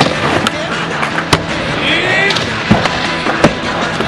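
A skateboard doing a double kickflip: a few sharp clacks of the board and the landing, with the two loudest impacts near the end, over the rolling of the wheels.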